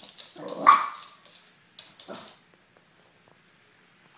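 A Maltipoo barks once sharply about half a second in, then gives a softer second bark about two seconds in. Scratchy scuffling noises come with the barks.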